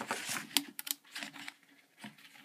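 A metal worm-drive hose clamp and a ribbed flexible plastic dust hose being handled as the clamp is slipped onto the hose end: rustling with a few quick clicks about half a second in.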